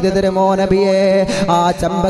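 A man's voice chanting in a singing style, with long wavering held notes.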